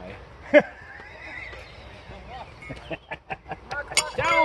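Men laughing, with one short, loud burst of laughter about half a second in. Near the end comes a run of quick, faint clicks.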